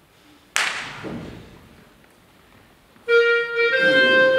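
A small wind and brass ensemble playing live. About half a second in, a single sharp hit rings away, then a lull. About three seconds in, the winds come in together with a loud sustained chord.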